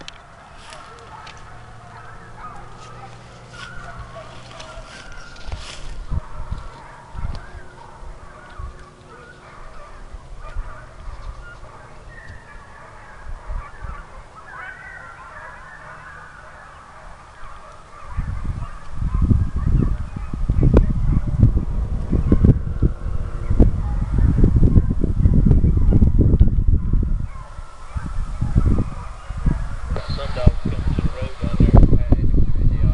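A pack of hounds baying in the distance, a faint, broken chorus of calls. From a little past halfway, loud low rumbling buffets the microphone and covers much of it.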